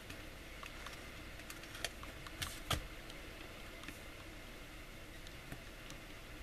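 Faint, scattered clicks and taps of nail stamping tools, a scraper and a silicone stamper, against a metal image plate as the polish is scraped off and the image picked up, the loudest click a little under three seconds in, over low room hiss.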